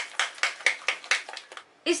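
Thick chickpea-flour batter being stirred in a bowl: a quick run of short wet slaps and scrapes, several a second, pausing briefly near the end.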